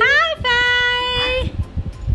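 A high-pitched playful singsong voice: a quick rising note, then a long held note lasting about a second, as in a sung or drawn-out call to a baby during a clapping game.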